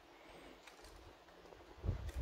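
Quiet, faint handling noise at a workbench, with a few light ticks and a dull low bump near the end as a hand takes hold of a plastic model car body.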